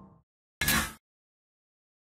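A short outro sound effect: a sound fades out at the start, then one brief noisy burst just over half a second in, lasting under half a second, followed by dead silence.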